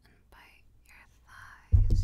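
Close-miked kissing sounds: soft breathy, wet mouth noises, then about 1.7 s in a loud kiss with a low thump and a smacking click.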